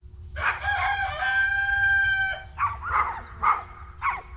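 A rooster crowing: one long call of about two seconds, followed by three short calls, over a faint steady low hum.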